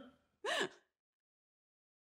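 A woman's brief laugh: a single short breathy burst about half a second in.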